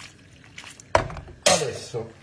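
A utensil knocks once against a metal frying pan of pasta about a second in, with a brief scrape and a short murmur of voice after it.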